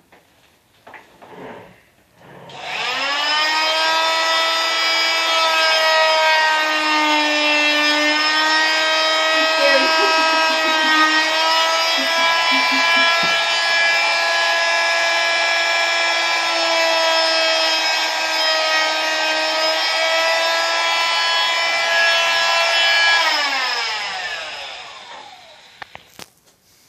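Electric cast saw running. It starts about two and a half seconds in with a rising whine, holds a steady high whine whose pitch sags briefly now and then, and winds down near the end as the cast is cut off a leg.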